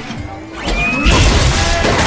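Loud crash of a snack table collapsing under a person's weight, starting about halfway through, over background music.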